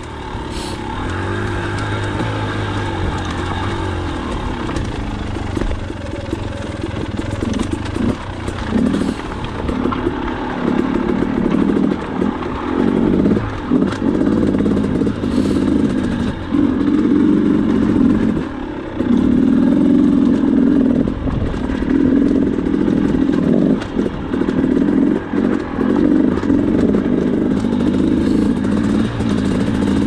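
KTM 300XC two-stroke dirt bike engine running at low revs, the throttle opened and closed in short surges, with more on-off throttle in the second half, heard from a helmet chin-mounted camera. A few sharp knocks come through as the bike goes over the rocks.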